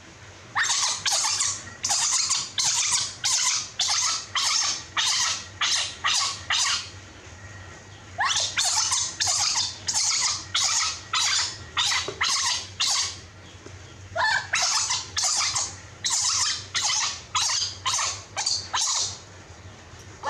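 Newborn macaque crying: shrill, piercing cries repeated about two or three times a second, in three long bouts with short breaks between them, a sign of the infant's distress.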